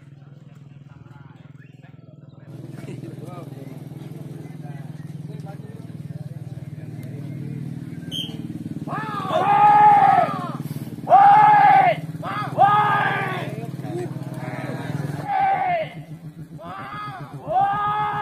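Several loud, drawn-out shouts from men, each rising and then falling in pitch over about a second, starting about nine seconds in, over a low steady hum.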